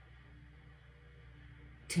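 Quiet room tone with a faint steady low hum during a pause in speech; a woman's voice starts again near the end.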